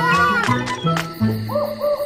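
An owl hooting twice near the end, a cartoon sound effect, over background music with a steady bass line.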